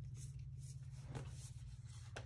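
Quiet room tone with a steady low hum and a few faint soft clicks, the clearest a little past halfway.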